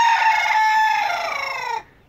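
Rooster crowing: one long call that sags in pitch and stops near the end.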